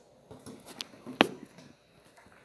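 A few light clicks and knocks of plastic kitchenware being handled, with one sharp click a little over a second in.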